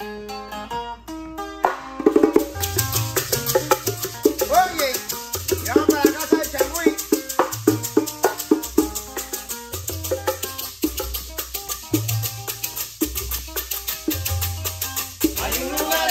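A changüí band playing. A tres guitar plucks a short solo opening, then about two seconds in the whole band comes in with maracas, bongos, a scraper and a deep bass line in a steady, driving dance rhythm.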